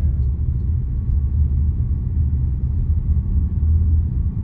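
Steady low rumble of a car on the move: road and engine noise.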